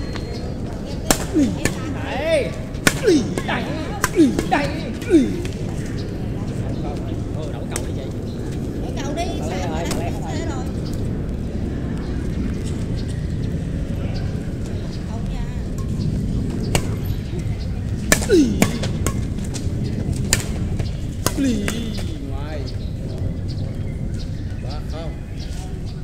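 Badminton rackets striking a shuttlecock: rallies of sharp, crisp hits, one run of several in the first few seconds and another near the end, with a few short calls from the players over a steady low background rumble.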